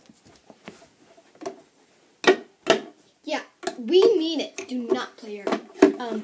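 Model horses being handled: a few sharp plastic knocks and clicks, with a child's wordless voice in the middle for about a second and a half.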